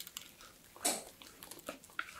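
Thick black-tea sponge cake batter pouring into a cake tin, landing in soft, wet, sticky plops, with one louder plop about a second in.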